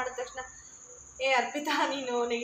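A woman talking, with a pause of about a second near the middle, over a faint steady high-pitched whine.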